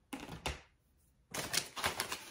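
Crumpled brown kraft packing paper crinkling as it is handled, in two bursts of crackling: a short one near the start and a longer one from about halfway through.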